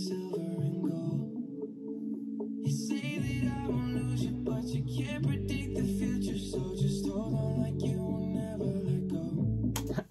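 A recorded pop ballad playing: a male lead vocal sings over sustained keyboard chords, with a deep bass coming in about three seconds in.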